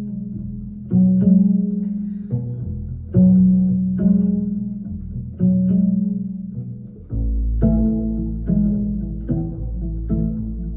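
Upright double bass played pizzicato, unaccompanied: a melodic line of single plucked notes, each starting sharply and ringing away. A much deeper low note sounds about seven seconds in.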